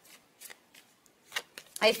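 Tarot cards being handled: a few short, soft card clicks scattered through a pause, before a woman starts speaking near the end.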